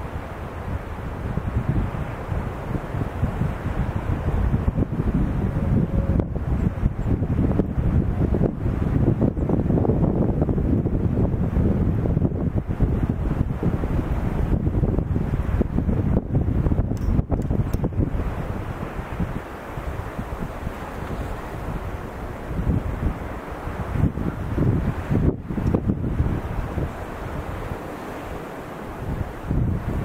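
Wind buffeting an outdoor microphone in gusts: a low, rumbling noise that swells and eases, heaviest through the first half, dropping back a little past the middle, then gusting again toward the end.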